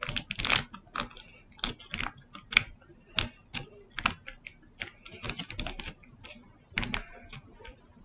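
Foil wrapper of a Pokémon TCG booster pack crinkling and tearing as it is worked open by hand: irregular crackles and clicks.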